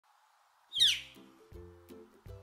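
A single loud, downslurred bird call about a second in, the scream-like 'kee-yer' of a northern flicker. It comes over the start of background music with low, sustained notes repeating about every three-quarters of a second.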